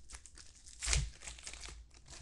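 Glossy trading cards being handled and shuffled by hand: a run of short crinkling ticks, with a sharper snap about a second in.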